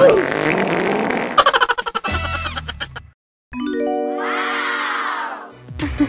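Cartoon soundtrack of music and comic sound effects. It breaks off into a brief silence about three seconds in, then comes back with a rising run of held tones.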